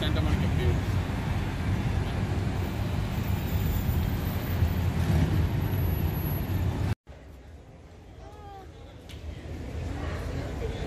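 Steady road-traffic noise from a busy street, with a heavy low rumble. About seven seconds in it cuts off abruptly to a much quieter background.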